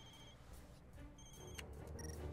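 Faint film soundtrack: a high electronic tone sounding in short spells with gaps, over a low, quiet bed of music.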